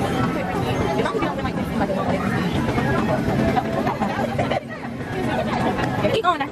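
Casino-floor hubbub: many voices chattering, with electronic slot machine tones and jingles mixed in as a video slot plays out its free spins. The level dips briefly about four and a half seconds in.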